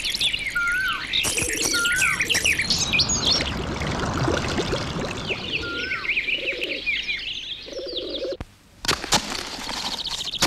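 Many birds chirping and calling together, with a short rising-and-falling whistle repeated several times. The sound drops out briefly just past eight seconds, then a couple of sharp clicks.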